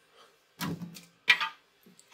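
Two short knocks of the red plastic UV cover of a Creality Halot One resin printer being picked up and handled, the first about half a second in and the second under a second later.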